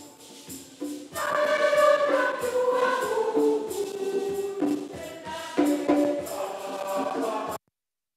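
Congregation and choir singing the recessional hymn, with percussion keeping a steady beat; the sound cuts off suddenly near the end.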